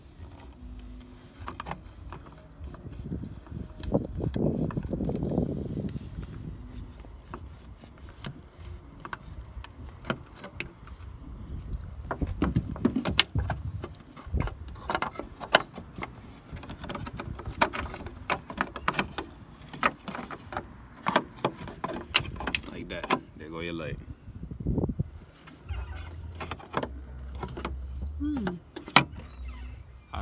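A screwdriver and knife blade clicking and scraping against the plastic license plate light housing as it is pried out of a BMW 335i's trunk lid: a long run of sharp clicks and scrapes, thickest in the second half.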